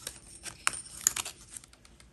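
Sling psychrometer being handled and turned in the fingers: a string of light clicks and rattles, with two sharper clicks near the middle.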